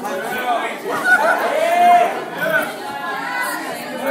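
Crowd chatter: many voices talking over one another at once, with one drawn-out call about halfway through.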